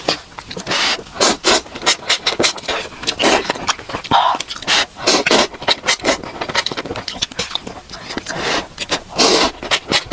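Close-miked slurping and chewing of instant cup noodles in soup: a quick, irregular run of loud slurps and wet mouth sounds.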